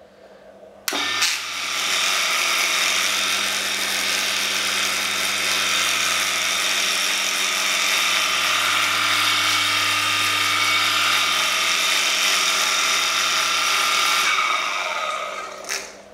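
A 0.5 hp single-phase electric water pump starts with a click about a second in and runs steadily with a hum and a high whine, then winds down near the end. It runs without pumping: its inlet pipe and pump chamber are full of air and it needs priming.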